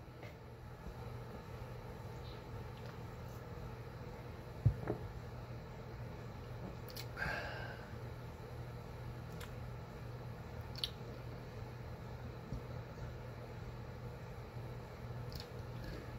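Quiet room tone with a steady low hum, broken by a single soft thump about five seconds in and a few faint clicks and rustles later on.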